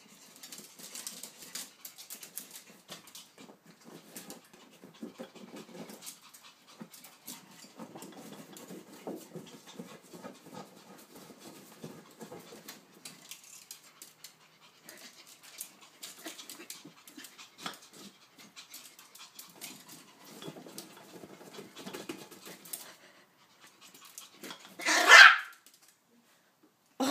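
Yorkshire terrier at play, panting, with many small clicks and scuffles of paws and claws on a tile floor. One loud, short bark comes about a second before the end.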